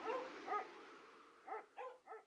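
An animal's short yelping calls: two in the first half-second and two more close together near the end, over a faint hiss that fades away.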